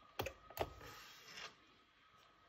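Power switch of a Siemens drip coffee maker clicking as it is pressed on, two short clicks in the first second, followed by a faint hiss.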